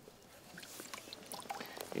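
Faint water sounds from a plastic bucket: small splashes and drips as a hand scoops a minnow out of the water, with scattered light clicks that grow a little louder near the end.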